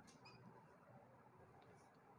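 Near silence, with a few faint, short squeaks of a marker pen writing on a whiteboard.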